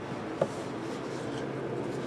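Trading cards being handled: cards slid and rubbed off a small stack by hand, with one light tick about half a second in, over steady low room noise.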